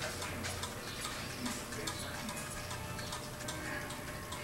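Light, repeated ticks over a low steady hum.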